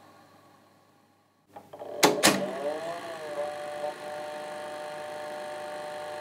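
Near silence, then sharp mechanical clicks of a VCR-style tape mechanism about two seconds in. A wobbling tone follows and settles into a steady hum.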